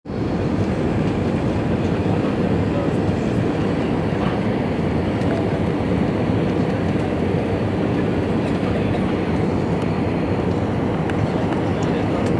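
Steady cabin noise of an Airbus A320 airliner descending on approach: engine and airflow rumble, heaviest in the low end, at an even level throughout.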